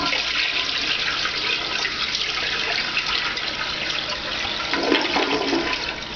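A toilet flushing: a steady rush of water for several seconds that eases near the end. The bowl is draining freely now the paper clog has been cleared.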